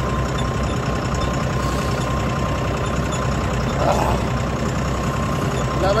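John Deere 5310 GearPro tractor's diesel engine running steadily under a laser land leveller, a low drone with a thin, even whine above it.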